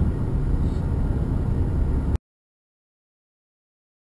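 Steady low rumble of a moving car's road and engine noise, cutting off abruptly about two seconds in, followed by silence.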